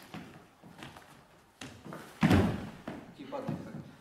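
A man falling onto a wooden floor: one heavy thud about two seconds in, followed by a few lighter knocks as he settles.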